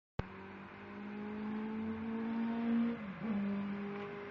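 A click, then a steady motor hum with a clear pitch that rises slowly, sags briefly about three seconds in and picks up again.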